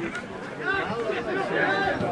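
Men's voices calling out and talking over one another on a football pitch.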